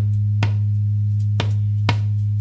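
A band's low drone note held steady on one pitch, with three sharp strikes on a caja (Andean frame drum) spaced unevenly about half a second to a second apart.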